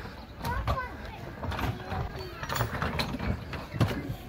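Outdoor ambience of faint children's voices in the background, with a few light knocks and clicks.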